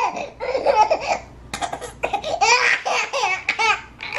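A baby fussing and crying in short broken bursts, mixed with laughter.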